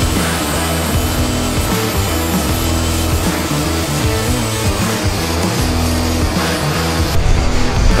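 Background music over the steady grinding hiss of a handheld tungsten sharpener, its diamond bit grinding a TIG tungsten electrode to a point; the grinding hiss drops away about seven seconds in.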